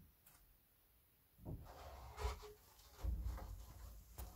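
Faint rustling and rubbing of toilet paper being drawn off a roll by mouth, starting about halfway through, with a few soft low thumps.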